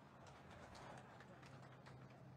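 Near silence: a faint steady low hum with a few soft scattered clicks.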